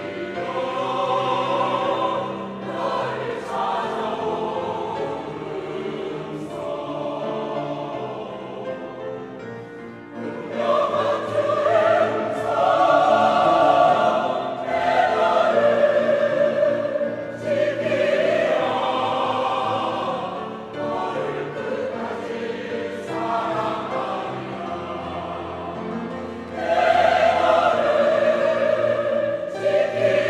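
Large mixed church choir of men and women singing a Korean choral anthem. The singing is softer for about the first ten seconds, then swells noticeably louder, and grows loud again near the end.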